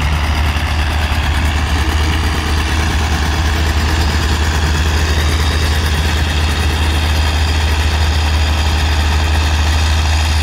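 Vintage farm tractors running under load while plowing: a John Deere passes close by and moves away, and a crawler tractor runs further off. Together they make a steady, unbroken engine drone.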